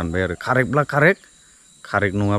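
A man talking, with a short pause just past the middle. A steady high-pitched insect chorus runs underneath.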